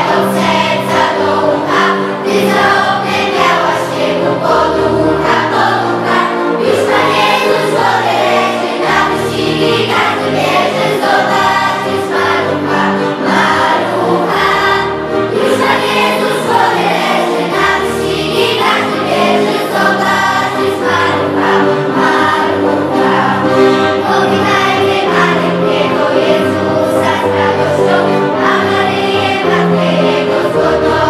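A school choir singing a Polish Christmas carol (kolęda) over a low instrumental accompaniment, with no break.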